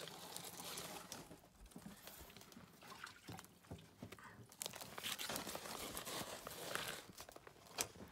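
Faint water sounds as turtles are lifted from a tub and let into a pond: irregular splashes and drips with scattered small clicks and knocks, a little louder around the middle.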